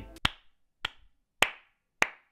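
A person clapping slowly: single hand claps, evenly spaced a little over half a second apart.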